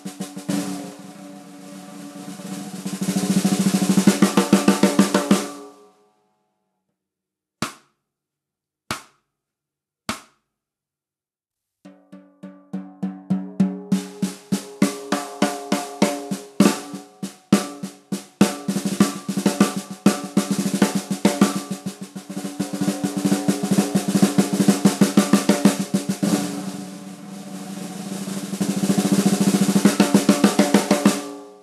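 14x6 DS Drum seamless brass snare drum played with sticks. A building roll stops about six seconds in, followed by three single strokes about a second apart, then fast strokes build up again from about twelve seconds in.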